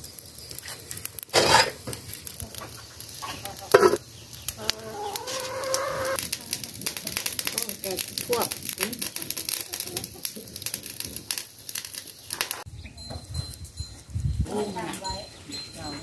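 Free-range chickens clucking around a yard, with a rooster crowing once for about a second and a half near the middle. Two sharp knocks from a cooking pot being handled come in the first few seconds.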